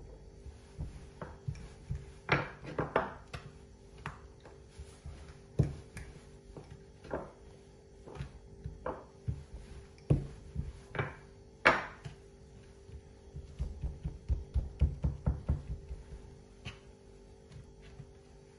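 Dough being worked by hand on a wooden cutting board: scattered knocks and soft thumps of hands and a wooden rolling pin against the board, then a quick run of soft low thumps from about three-quarters of the way in. A faint steady hum runs underneath.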